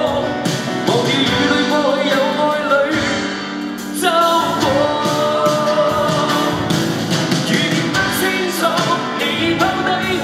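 Live pop ballad: a male singer's amplified vocal, with long held notes, over dense instrumental backing.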